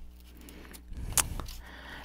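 A hand handling a cardboard subscription box and its crinkle-cut paper shred: a few short clicks and rustles about a second in, after a quiet start.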